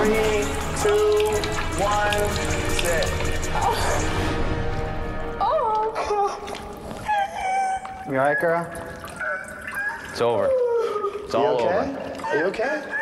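Background music over a splashing wash of noise for the first few seconds. Then a woman crying out in distress: high-pitched, wavering wails in short outbursts, without clear words.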